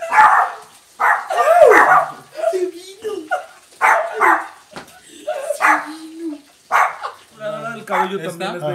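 A person's voice yelping and screaming 'ah!' in short loud cries, about one a second, while wearing a VR headset.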